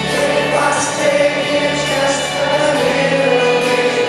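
Live band music with sung vocals holding long notes, over a band that includes an upright double bass.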